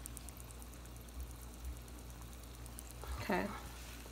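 Pot of water at a rolling boil on a gas stove: faint, steady bubbling over a low hum.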